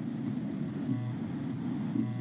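Steady low background hum and hiss from an open microphone, with a faint brief murmur about a second in.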